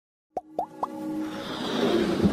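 Sound effects of an animated logo intro: three quick rising pops about a quarter second apart, then a swelling whoosh that grows louder, with music tones underneath.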